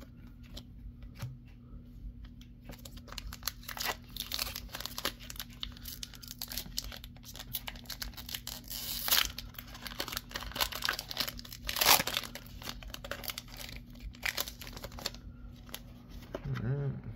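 Foil wrapper of a Pokémon trading-card booster pack crinkling and tearing open in the hands: a run of sharp crackles that starts a couple of seconds in, with the loudest rips a little past halfway and about three-quarters through.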